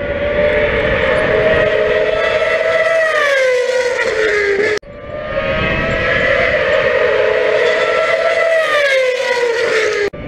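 Open-wheel racing car's engine at high revs, a steady high note that falls in pitch as the car passes by. Heard twice, with an abrupt cut about halfway through.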